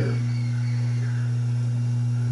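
A steady low hum at one pitch with a fainter overtone, unchanging throughout.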